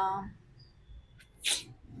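A woman's speech trailing off, then a small mouth click and a short sharp breath in about a second and a half in, just before she speaks again.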